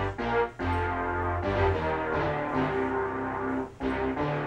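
Synthesizer music played from a capacitive-touch coin MIDI keyboard: a slow tune of sustained notes over held chords and a bass line that changes every second or so, with brief gaps at the chord changes.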